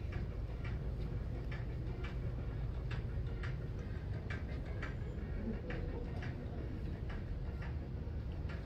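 Footsteps at a steady walking pace, light clicks about twice a second, over a low steady background hum.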